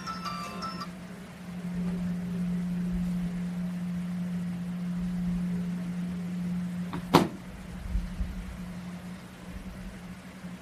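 A short tune of quick stepped high notes ends just under a second in. Then a steady low hum, louder from about a second and a half in, with one sharp click about seven seconds in.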